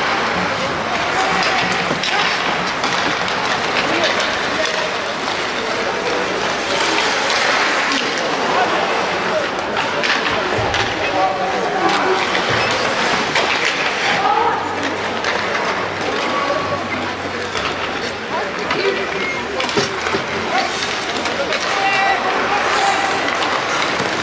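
Ice hockey game sounds at rink level: skates scraping the ice, sticks and puck clicking, and players and the bench calling out without clear words.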